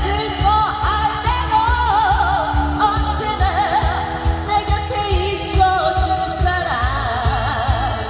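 A woman singing a Korean pop ballad live into a microphone with heavy vibrato over an amplified backing track with a steady bass beat.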